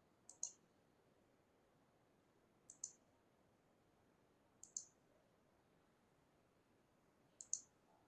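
Near silence broken by four short, sharp double clicks, each a quick pair, about two to three seconds apart.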